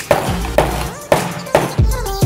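A mallet knocking steel bearings into the centres of plastic fidget spinners: three sharp knocks, one near the start, one about a second in and one about a second and a half in. Electronic background music runs under them.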